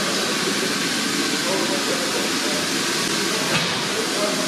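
Steady hiss of steam from standing steam locomotives, with faint voices underneath.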